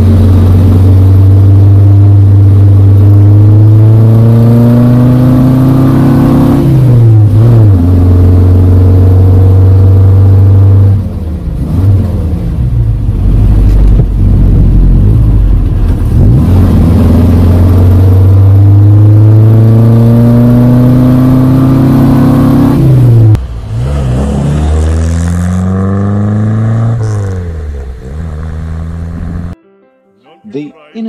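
The Innocenti Coupé's 1098 cc four-cylinder engine pulling hard through the gears, heard from inside the cabin. Its pitch climbs steadily, then drops back at each gear change, several times over.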